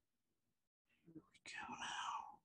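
A short breathy, whisper-like sound from a person, starting about a second and a half in and lasting under a second, over a quiet room.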